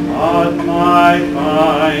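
A man singing slow held notes with vibrato over instrumental accompaniment, moving into a drawn-out "oh" at the very end.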